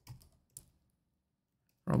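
A few keystrokes on a computer keyboard, typing in the first second, with speech starting right at the end.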